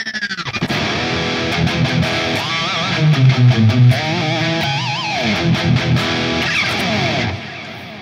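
Electric guitar played through an amp-simulator plugin with a gain tone: lead lines with bent, vibrato notes, and heavy low notes about three seconds in. The playing stops about seven seconds in.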